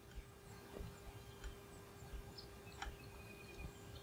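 Quiet room tone: a faint steady hum with a few soft clicks.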